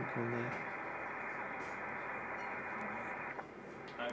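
Icom IC-7300 HF transceiver's speaker giving a steady hiss of band noise on 20 m sideband while the VFO is tuned, with no station coming through. The band seems to have died. The hiss is cut off at the top by the narrow SSB filter and drops noticeably a little after three seconds in.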